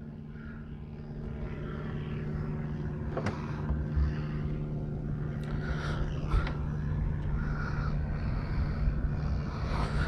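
A steady engine drone with a low hum, growing louder over the first few seconds, with a few light clicks over it.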